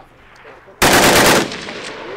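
A loud, short burst of full-auto machine-gun fire about a second in: roughly half a second of rapid shots, trailing off in a brief echo.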